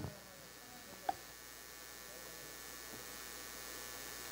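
Faint room tone: a steady low hiss and hum, with one short blip about a second in.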